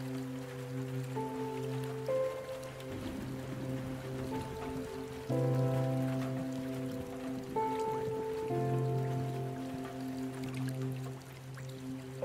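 Slow, calm instrumental sleep music: soft held chords that change every couple of seconds over a steady low drone, layered with a recorded sound of running water and drops.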